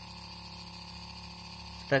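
Small DC motor turning slowly on a low supply voltage, giving a steady hum with several fixed tones.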